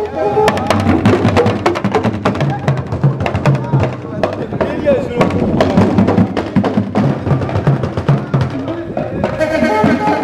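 Dagbon drum ensemble of talking drums and bass drums playing a fast, busy rhythm, with voices singing or calling over the drumming.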